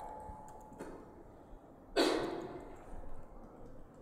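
Quiet room tone with a few faint clicks, and about halfway through a short breathy noise on the presenter's microphone that fades within a second.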